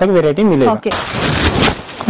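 Saree fabric rustling loudly as it is handled and spread out, starting a little under a second in.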